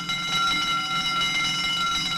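Alarm bell ringing in one unbroken, steady ring.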